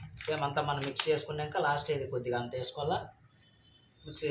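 A man talking for about three seconds, then a short near-quiet pause.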